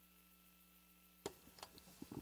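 Near silence on the broadcast feed: a faint steady hum, broken a little past halfway by one sharp click and a few faint ticks.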